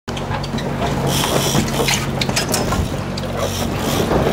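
Boat engine running steadily, a low even hum, with scattered clicks and hissy noise over it.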